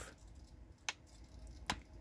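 Two short, faint clicks from the controls of a RadioMaster MT12 radio transmitter as they are pressed, one about a second in and one near the end.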